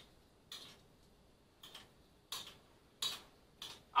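A spoon scraping and clinking against a ceramic plate while thick, loaded oatmeal is stirred: about five short, irregular clatters.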